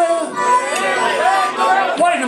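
Blues harmonica played live over electric guitar accompaniment, its notes sliding up and down in bends.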